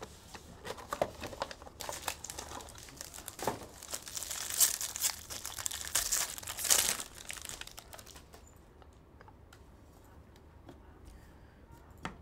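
Crinkling and tearing of a trading-card box's foil and plastic packaging being ripped open by hand, with sharp crackles. It dies down to faint handling about two-thirds of the way through.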